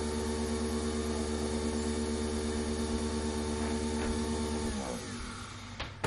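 Nespresso Vertuo capsule coffee machine brewing: a steady motor hum from the spinning capsule, which winds down with a falling pitch a little under five seconds in.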